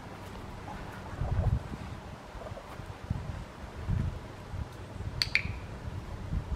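A dog-training clicker clicks once, a sharp double click from press and release, near the end, marking the puppy's behaviour. Low rumbles come and go underneath.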